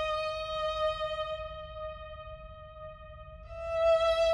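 Solo violin holding one long, slow note that gradually fades, then a new note swells in near the end.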